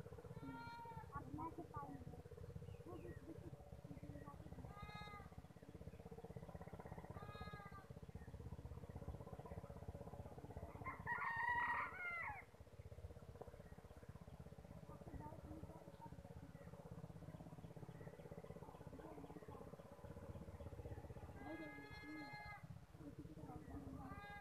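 Faint outdoor ambience with a steady low hum and a few scattered short animal calls, the loudest and longest about halfway through.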